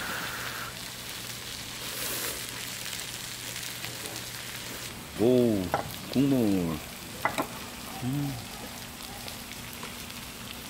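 Pork belly sizzling steadily on a large iron griddle plate. About five seconds in, a person's voice sounds briefly twice, then once more a few seconds later, along with a couple of light clicks.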